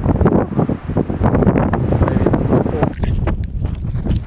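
Strong gusty storm wind buffeting the microphone in a loud, continuous low rumble, with a shift in its sound about three seconds in.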